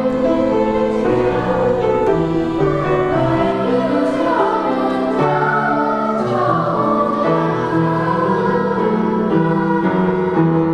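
Choral music: several voices singing slow, sustained chords that change in steps.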